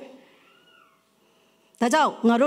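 A woman's voice through a microphone trails off into a pause of about a second and a half. A single faint high tone rises and falls during the pause, and speech starts again near the end.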